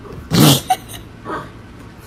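One short, loud, explosive animal call about a third of a second in, from a dog and cat squaring off, with a sharp click just after it and a fainter call about a second later.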